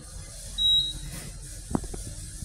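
Otis elevator cab's electronic signal sounding one short, high, steady beep, followed about a second later by a short thump.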